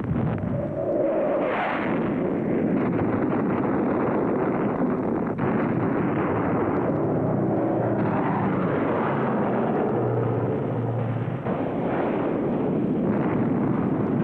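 Battle sound: a loud, continuous rumble of explosions and aircraft engine noise, with one sharp bang about five seconds in.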